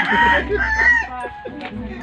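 A rooster crowing once, a loud call lasting about the first second.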